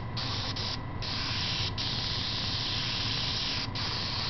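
Airbrush spraying paint: a steady hiss of air that breaks off briefly a few times, the longest break just before a second in.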